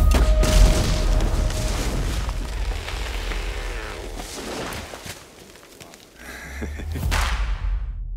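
Trailer sound effects: a loud boom hits at the start, followed by a rushing noise that fades to a lull about five seconds in, then a swelling whoosh that cuts off suddenly near the end.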